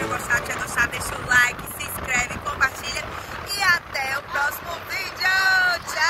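A family of adults and young girls shouting and squealing excitedly in high voices, a run of short yells ending in a long, held high-pitched shout near the end, with wind noise on the microphone.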